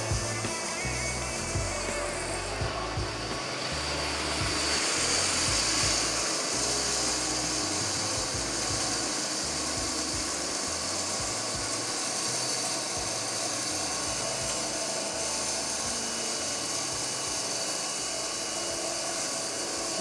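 Wood-Mizer WM1000 band sawmill blade cutting lengthwise through a large black walnut log: a steady sawing noise that swells slightly a few seconds in.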